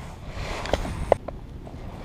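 Handling noise close to the microphone: a hand brushing past with a rustle, then a few light clicks and knocks about a second in, over a low steady rumble.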